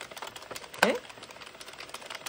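Addi 46-needle circular knitting machine being cranked, its plastic needles clicking rapidly and steadily as they knit a row of waste yarn.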